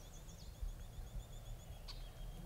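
Songbirds singing: a fast, high trill of short repeated notes, faint, with a single sharp click near the end.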